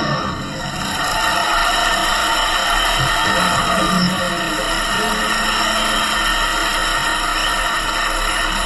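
Music: a band recording playing steadily at full level, with a brief dip in loudness just after the start.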